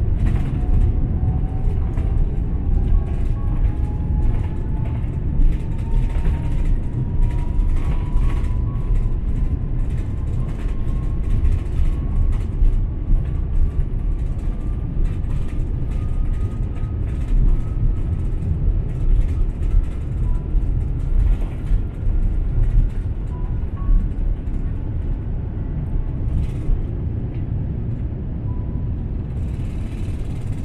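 Cabin noise of an Airbus A350 jet airliner on its takeoff roll: a loud, steady rumble of engines and runway, with a whine that rises slowly in pitch throughout, and scattered short knocks.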